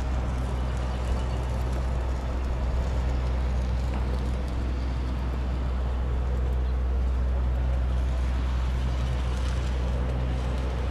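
Steady low hum of an idling motor vehicle engine over street ambience, rising slightly in the second half.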